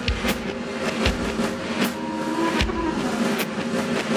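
Fusion jazz-rock band playing: drums hit a strong beat about every three-quarters of a second under sustained electric guitar tones, one of which bends in pitch about halfway through.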